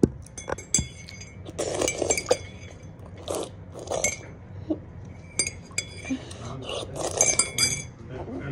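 Dishware clinking: a cup or glass struck by a utensil in an irregular series of ringing clinks, several close together about two seconds in and again near the end.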